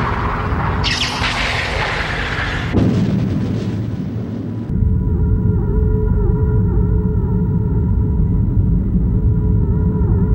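Sci-fi explosion sound effects over a held synthesizer score. A hissing blast fills the first few seconds, a heavier hit comes about three seconds in, and from about five seconds on a low rumble runs under sustained chords.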